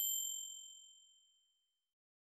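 Notification-bell ding sound effect from a subscribe-button animation: a single bright chime that rings out and fades away over about a second and a half.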